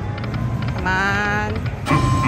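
Dragon Link Happy & Prosperous slot machine sound effects over the steady hum of a casino floor. There is a quick run of ticks, then a held electronic chime tone, and a louder sound starts just before the end.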